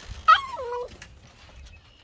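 A husky-type dog gives one short whine that drops in pitch, lasting about half a second near the start.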